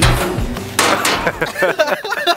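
A sharp metal bang from a steel dumpster lid as music cuts off, with a second knock just under a second later. Young men's voices follow.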